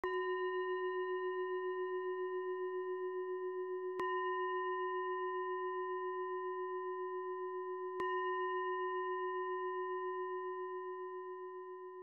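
A meditation singing bowl struck three times, about four seconds apart, each strike leaving a long, wobbling ring. The last ring fades away near the end.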